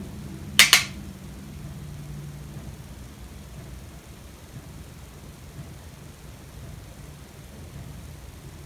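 A steady low hum of room noise, with a brief sharp double click a little under a second in.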